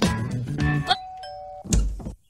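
Music for about the first second, then a two-note ding-dong doorbell chime, the second note lower, followed by a loud thump.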